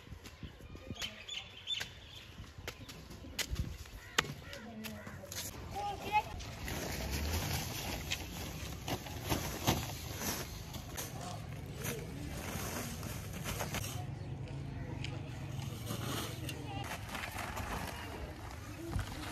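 Sand being scooped by hand into woven plastic sacks and the sacks handled, a rustling scrape heaviest in the middle of the stretch, among scattered knocks, with faint voices in the background.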